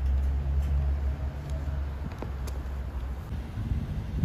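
Low, steady rumble of a motor vehicle engine running close by, easing off after about three seconds, with a couple of faint clicks in the middle.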